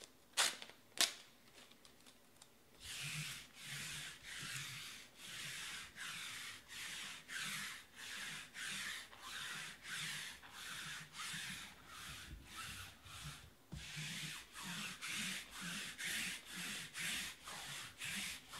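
Two sharp clicks, then about three seconds in a steady run of rubbing or scraping strokes, about two a second, that goes on throughout.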